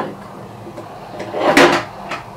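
A brief clatter about a second and a half in as a plastic craft punch is picked up and handled.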